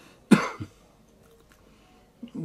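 A man's single short cough, about a third of a second in.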